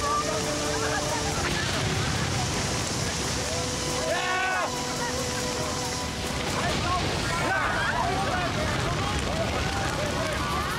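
Fire hoses spraying water onto a burning house, a steady rushing noise, with indistinct shouts from people nearby, one loud shout about four seconds in.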